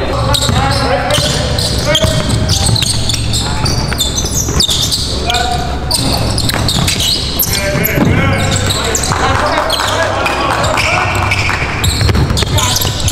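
Live sound of an indoor basketball game: a basketball bouncing on a hardwood gym floor, mixed with players' shouting voices in an echoing hall.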